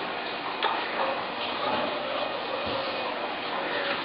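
A sheet of A4 paper being folded and creased by hand on a tabletop, with soft rustles and a few light taps over a steady background hiss.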